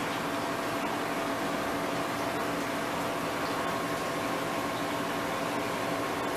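Steady mechanical hum and hiss of room air handling, with a few faint steady tones held throughout.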